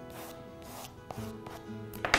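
Soft chalk pastel rubbed across drawing paper in several short, repeated strokes, over faint background music with held tones.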